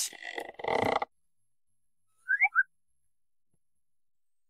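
A brief whistle-like chirp of three or four quick blips, in the manner of an edited-in comic sound effect, sounding about halfway through an otherwise silent stretch. A soft sound in the first second cuts off abruptly.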